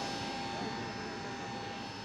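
Jet airliner engines whining steadily, with faint voices beneath.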